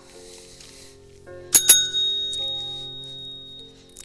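Two quick metallic clinks about a second and a half in, the second leaving a single high ringing tone that fades over about two seconds, over soft background music.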